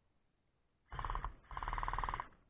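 Gel blaster firing two short full-auto bursts about a second in, a rapid buzzing rattle, the second burst longer than the first.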